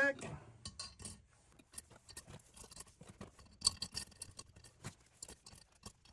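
Supertech steel valve springs being set one by one onto the seats of a Honda B18C5 aluminium cylinder head: a string of light metallic clicks and clinks, the loudest about three and a half seconds in.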